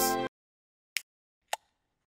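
Background music cuts off just after the start, then silence broken by two short, sharp pops about half a second apart, like the sound effects of an animated logo.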